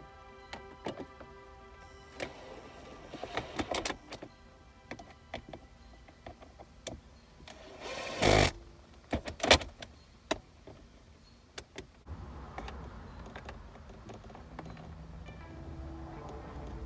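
Background music under scattered clicks and plastic knocks from a mini hot glue gun being worked against a plastic console lid. About eight seconds in comes a loud rush of noise lasting about a second, followed by two sharp knocks.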